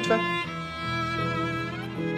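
Background score with long held notes that change pitch every second or so, led by a violin over lower sustained strings.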